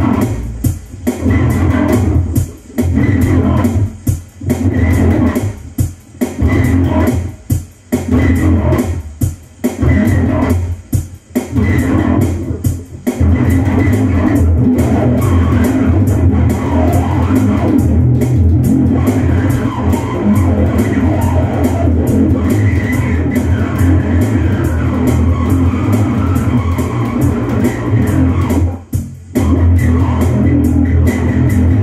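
Electric bass guitar playing a heavy rock riff, in short stop-start phrases with brief silences between them, then continuously from about halfway through, with one short break near the end.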